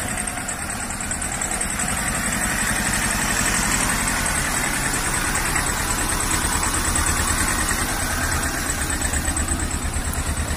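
Small pickup truck's engine idling steadily close by, a low even throb.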